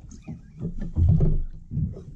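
Water knocking against the hull of a small drifting boat, in low irregular thumps, the biggest about a second in.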